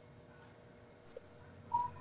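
Quiet room tone in a pause, with a faint tick about a second in and a brief, faint high tone near the end.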